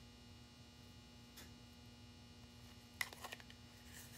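Near silence with a steady electrical hum, then a few sharp clicks and light rustling about three seconds in as ribbon is handled against a small drilled wooden ornament.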